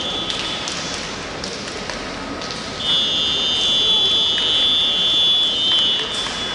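Referee's whistle blown in one long, steady blast of about three seconds, starting about three seconds in: the signal for the swimmers to step up onto the starting blocks.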